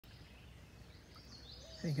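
Faint outdoor background noise with a thin, high bird call in the second half, then a man's voice starting at the very end.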